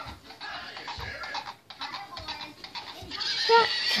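Plush stick horse's built-in sound effect playing a quick run of clip-clop hoofbeats, with a short pitched call near the end.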